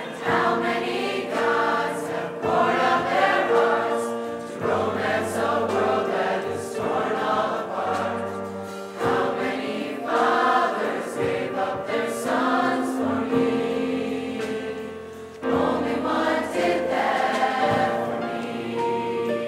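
Teen choir singing a worship song together in sustained phrases, with short breaks between phrases every few seconds.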